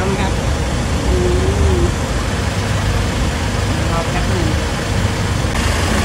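A vehicle engine idling steadily, a low continuous hum beneath short spoken phrases.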